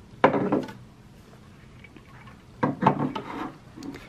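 Starbucks tumblers being handled and shifted on a wooden shelf: two short rubbing, scraping bursts, one just after the start and one about two and a half seconds later.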